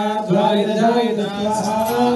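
A Hindu priest chanting Sanskrit mantras into a microphone, one male voice held on a steady, slowly gliding pitch.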